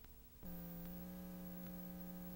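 A steady electrical hum with many overtones that switches on about half a second in, over faint hiss, as the picture breaks into tape noise and goes blank; faint ticks recur a little under a second apart.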